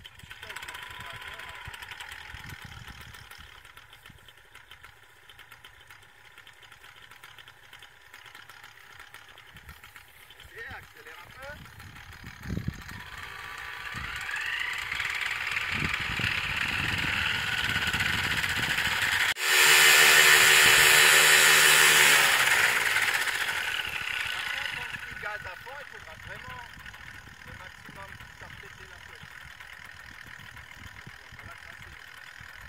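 Paramotor engine and propeller running up. It rises in pitch from about halfway through, jumps suddenly to full throttle a few seconds later, holds there for about four seconds, then dies back down.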